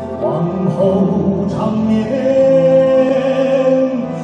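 A man singing a slow Chinese ballad into a handheld microphone over instrumental accompaniment, a phrase that settles about halfway through onto one long held note.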